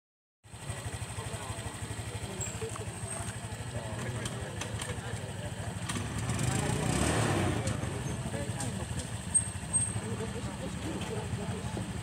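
A vehicle engine running steadily with a fast low pulsing, growing louder about halfway through and then easing, under the talk of people nearby. Two short sharp knocks come about three-quarters of the way in.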